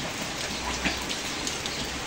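Heavy rain falling on a wet concrete floor and potted plants: a steady hiss with faint scattered drop ticks.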